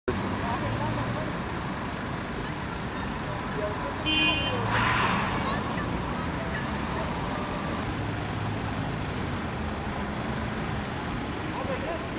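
Steady road traffic noise with faint voices. About four seconds in a car horn gives a short toot, followed by a brief louder rush of noise.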